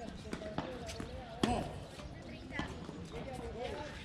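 Tennis ball struck by rackets and bouncing on a hard court: a series of sharp pops, the loudest about a second and a half in, over distant voices.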